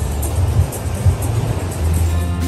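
Open-air beach noise: an even rushing hiss with irregular low rumbling gusts, like wind and surf on a phone microphone, in a break in the background music.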